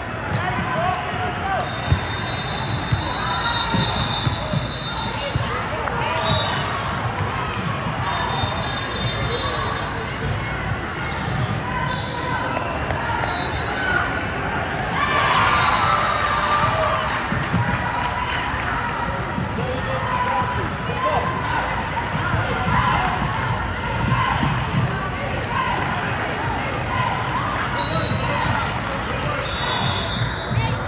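A basketball being dribbled and bounced on a hardwood court during play, a run of sharp knocks echoing in a large hall. Short high squeaks of sneakers on the floor come now and then, over the chatter of spectators.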